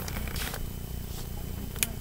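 Quiet handling of a spiral-bound cookbook as it is held open and moved, over a low steady hum, with one short click near the end.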